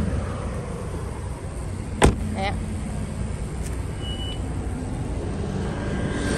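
Steady low vehicle rumble, with one sharp knock about two seconds in.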